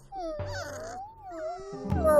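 A cartoon wolf cub's long whining cry, wavering up and down in pitch: the cub crying out, trapped in a pit. Background music plays underneath.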